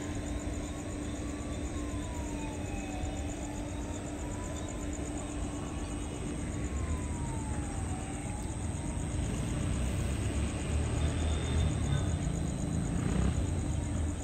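A faint siren wailing slowly up and down, over a steady low hum and a rumbling background that grows louder in the second half.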